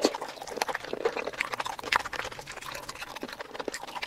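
Close-miked eating sounds: wet chewing and mouth clicks from saucy seafood, a dense run of irregular clicks and squelches. A sharp, louder click comes right at the start and another about two seconds in.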